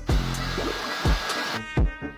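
Handheld hair dryer blowing steadily for about a second and a half, then cutting off, over background music with a steady beat.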